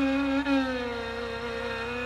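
Instrumental opening of a Carnatic-style film song: a long held violin note that slides down a little about half a second in and slowly grows quieter.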